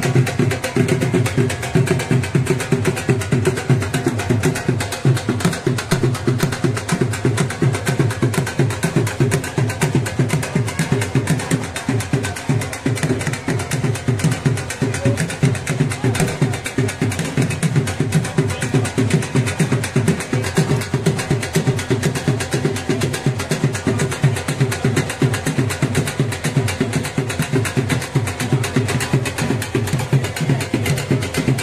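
Music led by drums beating a fast, steady rhythm.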